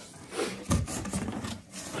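Cardboard rubbing and scraping in a run of irregular scuffs as the flaps of a cardboard wheel box are handled and opened.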